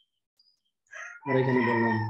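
A man's voice holding one long, drawn-out vowel at a steady low pitch for about a second, starting after a second of near silence.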